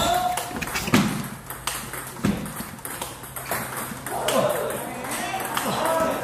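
Table tennis rally: the ball is struck back and forth with rubber-faced bats and bounces on the table, giving a run of sharp, hollow clicks every half second or so.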